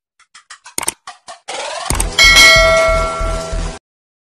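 Subscribe-button animation sound effects: a quick run of clicks, a rising whoosh, then a bright bell chime that rings and cuts off shortly before the end.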